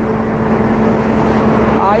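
Steady drone of a running vehicle engine with road noise, a constant low hum under a rushing hiss.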